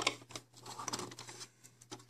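Small plastic clicks and scrapes as the removable cab roof of a Playmobil refuse truck is handled and lifted off to fit a figure inside: a few sharp clicks in the first half second, softer scraping, then another click near the end.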